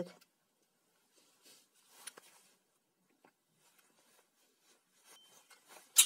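Faint clicks and rustles of pliers and hands working at the exposed wiring of an opened angle grinder. A sharp plastic clack comes at the very end as the rear handle housing is lifted off the motor body.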